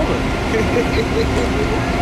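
City street traffic noise: a low, steady rumble with a constant engine hum, and a quick run of short, same-pitched blips through the middle.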